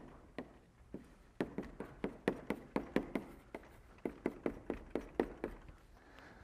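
Chalk writing on a blackboard: a couple of scattered taps, then a quick run of short chalk taps, about four a second, as an equation is written out.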